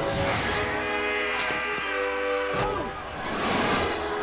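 Orchestral film score with long held notes, under several whooshing action sound effects.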